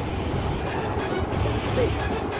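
A bus driving along a road, heard from inside by an open window: steady low engine and road rumble with rushing wind noise.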